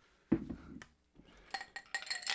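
Ice and a drinking glass clinking: a sharp clink about a third of a second in, then a lighter knock, then a few faint small clinks.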